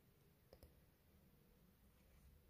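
Near silence with room tone, broken by two faint, quick clicks about half a second in.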